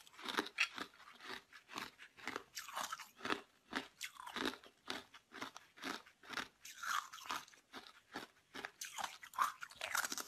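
Red-coloured ice being bitten and chewed, a quick irregular run of crisp crunches, about three a second.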